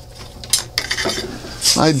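A light clatter of small hard items being rummaged and handled, with a few sharp clicks in the middle: thin carbon fibre tubing being pulled from a stash. A man's voice starts near the end.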